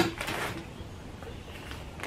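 A single short click at the start, then quiet room tone with faint handling noise.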